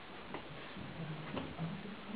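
Light clicks of porcelain teaware being handled on a tea table: two short sharp clicks, about a third of a second and about a second and a half in.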